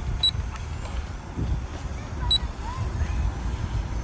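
Two short high beeps, about two seconds apart, from a drone's handheld remote controller, over a steady low outdoor rumble.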